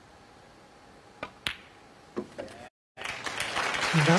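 Snooker balls clicking: the cue strikes the cue ball about a second in, the cue ball hits the object ball a moment later, and a further knock follows about half a second after. After a brief dropout near the end, audience applause starts to build.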